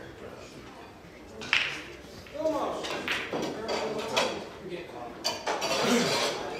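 Indistinct voices talking in a pool hall, with a sharp click about a second and a half in and a few lighter clacks later on.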